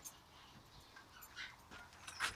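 Near silence: faint background with a few faint, brief sounds.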